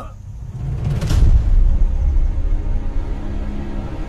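Dark, suspenseful film-score music: a deep boom about a second in, then a low rumbling drone with a held low note.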